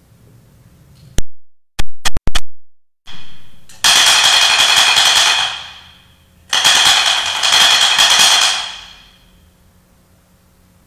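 Altar bells shaken twice at the elevation of the chalice after the consecration: two loud jingling rings about two seconds long each, with a ringing tail fading after each. A few sharp clicks come before them, about a second in.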